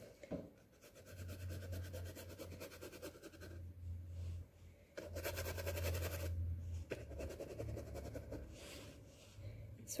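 A thick paintbrush scrubbing black acrylic paint onto a hand-held stretched canvas in back-and-forth strokes: a dry, rasping scrape with a low rumble from the canvas. It starts about a second in and is heaviest a little past the middle.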